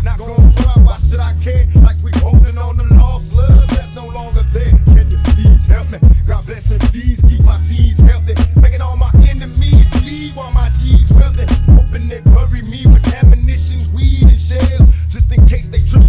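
Hip hop track: rapped vocals over a beat with heavily boosted bass and a steady rhythm.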